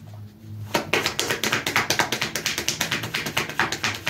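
Rapid, irregular light tapping clicks, several a second, starting about a second in and keeping on.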